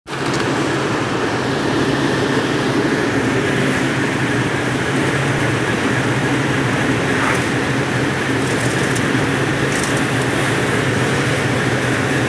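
Turmeric (haldi) grinding machine running steadily: a constant mechanical hum with a low drone that neither rises nor falls.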